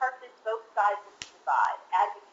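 A woman speaking in a narrated presentation, with a single sharp click about a second in.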